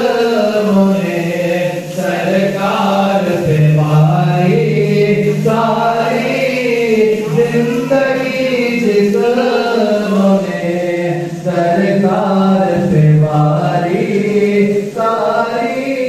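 Men's voices chanting a naat, devotional Urdu verse in praise of the Prophet, sung together in a continuous flowing melody.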